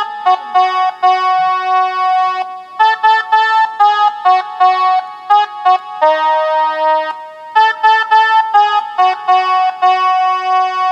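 Casio SA-41 mini keyboard played with one finger, picking out a song melody one note at a time in short phrases, with a few longer held notes between runs of quick notes.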